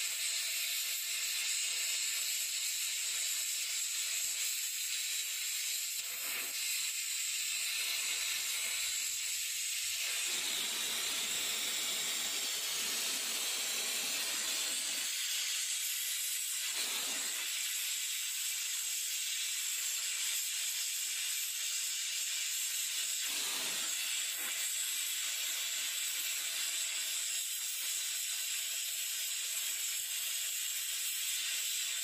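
Gas torch flame hissing steadily as it melts a tubular lead-acid battery's plate lugs into their lead connecting strap. The hiss grows fuller for a few seconds about ten seconds in, and briefly again near seventeen and twenty-three seconds.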